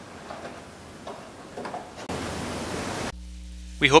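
Faint handling with a few small clicks as the radiator grille's retaining clips are pressed back into place along its top edge, followed by about a second of steady hiss that cuts off suddenly; a man's voice begins near the end.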